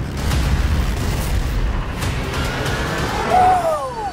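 Action film trailer sound mix: a dense, deep rumble with booms under music, and near the end a whine that falls in pitch.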